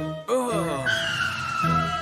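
Cartoon tyre-screech sound effect: a long high squeal that slowly falls in pitch from about a second in, as the car skids, over background music. A short wavering pitched sound comes just before it.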